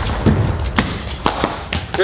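Shaken plastic soda bottles spraying with a fizzy hiss, broken by several sharp thuds and taps as bottles hit the floor and wall.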